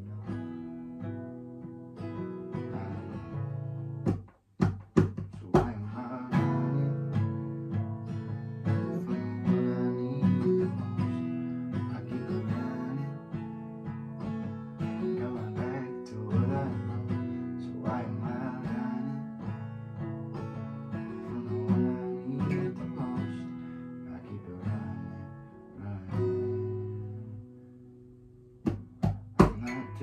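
Acoustic guitar strummed as accompaniment, with a man singing over it. A few sharp percussive hits come about four to five seconds in and again near the end, after a brief quieter stretch.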